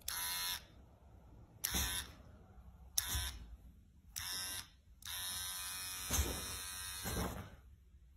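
Electric hair clipper buzzing in short on-off bursts, four quick buzzes about a second apart and then one longer run of about two seconds.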